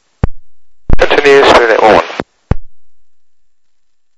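Air traffic control radio heard through an Icom IC-R3 scanner: a sharp click, a short spoken transmission of about a second, then another click as the transmission drops, fading to quiet.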